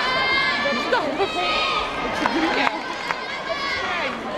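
Arena crowd chatter, several voices talking over one another, with a few sharp knocks from the uneven bars as the gymnast swings on them.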